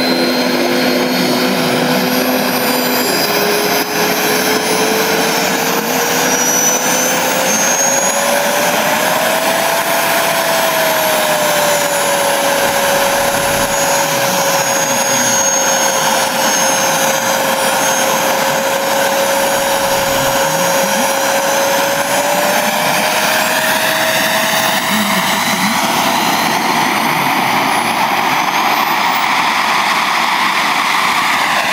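Model jet's tuned P180 gas turbine running on the ground: a loud, steady rush with a high whine. Its pitch climbs over the first ten seconds, holds, then rises a little again a little after twenty seconds.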